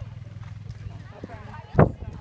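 Outdoor ambience with a steady low rumble and faint distant voices, then a single loud thump near the end.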